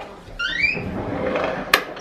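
An interior door being handled: a short rising squeak, a rustle, then a sharp click near the end.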